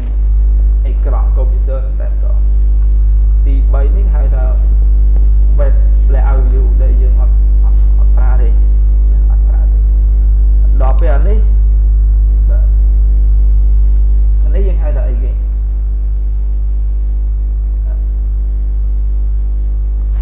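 A loud, steady low electrical hum on the recording, with a voice speaking a few short phrases now and then over it.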